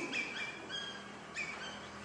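A few short, high chirps, like a small bird calling faintly in the background, one note held a little longer just before a second in.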